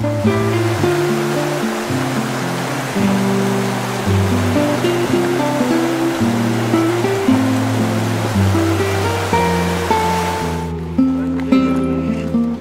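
Background music of slow, held low notes laid over the loud, steady rush of a mountain stream; the water sound cuts off suddenly near the end, leaving the music alone.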